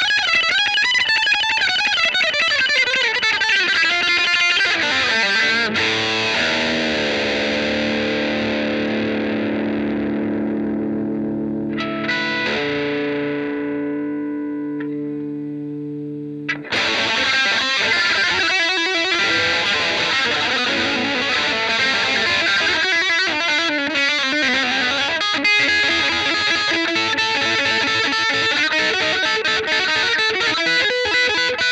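Yamaha Pacifica electric guitar being played. It opens with wavering, bent lead notes, then a chord is left to ring and slowly fade. A second chord is struck about twelve seconds in and rings out, and lead playing picks up again about seventeen seconds in.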